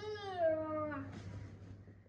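A young girl's drawn-out, whining 'oooh' of pretend fright, one long call that jumps up at the start and then slides down in pitch over about a second.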